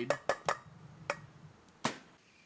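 Stainless steel bowls clinking and knocking as strawberry purée is poured from a small bowl into a mixing bowl on a wooden butcher-block board: a few light clinks, then one louder knock near the end.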